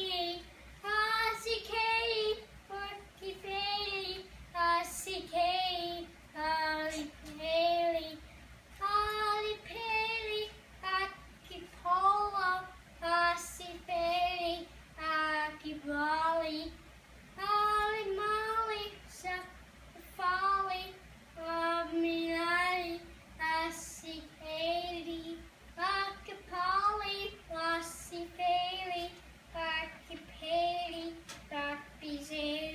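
A young boy singing solo without accompaniment: a long run of held notes, each about half a second to a second long with short breaks between, his voice wobbling strongly in pitch.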